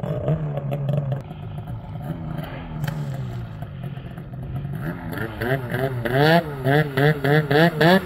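Snowmobile engine running steadily at low revs, then from about five seconds in revved in quick repeated bursts, about two a second, the pitch rising and falling each time as the sled is worked free of deep powder.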